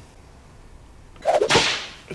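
A single sharp crack trailing off into a short swish, about a second and a half in, as two men bump hands in a high-five. A quick "yeah" comes just before it.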